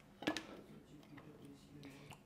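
A single sharp click about a quarter second in: the plastic flip-top cap of a squeeze bottle of hot sauce snapped open, followed by faint low handling sounds.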